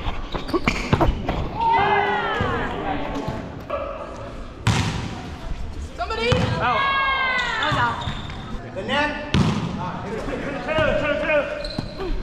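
Indoor volleyball rally: the ball struck sharply by hands and forearms three times, about four to five seconds apart, with short squeaks of sneakers on the hardwood floor between hits, echoing in a large gym.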